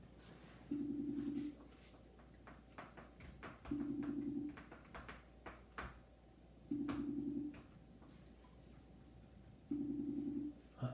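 Outgoing call ringing tone from a computer's speaker: a short buzzing ring of under a second, repeating every three seconds, four times, with no answer. Faint clicks come between the rings.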